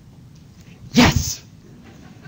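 A single sudden, loud vocal burst from a person about a second in, short and falling in pitch, like a sneeze.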